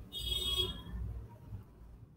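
A faint high-pitched electronic whine, several steady tones together, lasting about half a second at the start over a low rumble, then fading to a faint background.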